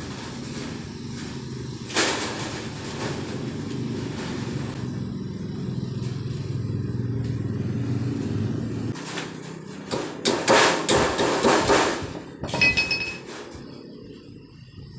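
A low, steady engine-like rumble fills the first nine seconds or so. Then comes about two seconds of loud, rapid rattling knocks as the galvanized iron sheet and hand tools are handled on the floor, and a short metallic ring near the end.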